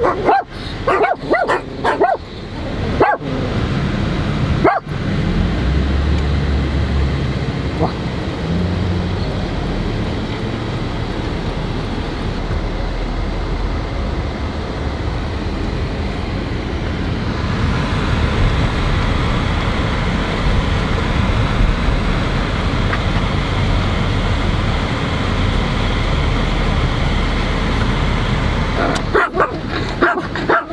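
A dog making short, repeated calls in the first few seconds and again near the end. In between is the steady noise of a car driving.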